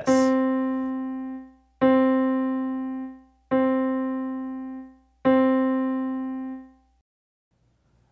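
Piano playing the same note four times as half notes, each held for two beats and fading before the next, an even, slow rhythm.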